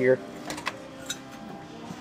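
Faint handling noise: a few light clicks and taps, with a low steady hum underneath.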